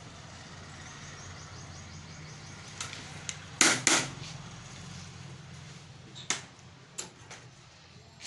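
Steady low background hum with a few sharp clicks of combs and hand tools being handled, the loudest two close together about halfway through.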